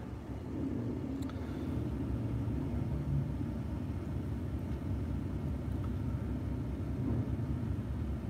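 Steady low rumble of a parked car's engine idling, heard from inside the cabin.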